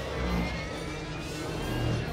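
Television drama soundtrack from a burning-airliner crash scene: a low, steady rumble under a dramatic music score with slow, held tones.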